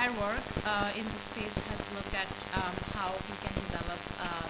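A woman speaking into a microphone in a large hall, over a steady crackling hiss of recording noise.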